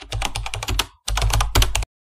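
Computer keyboard typing sound effect: two quick runs of rapid key clicks with a short gap about a second in, accompanying on-screen text being typed out letter by letter.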